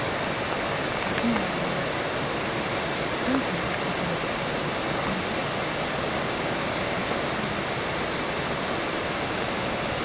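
Steady rushing of a waterfall, an even wash of water noise at a constant level. A few short, low sounds falling in pitch come over it, twice slightly louder, about a second in and at three seconds.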